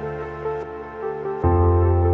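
Intro theme music: held chords over deep bass notes, with a new, louder chord coming in about one and a half seconds in.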